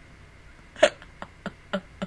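A woman's stifled laughter behind her hand: a sharp burst a little under a second in, then three or four smaller bursts about a quarter second apart.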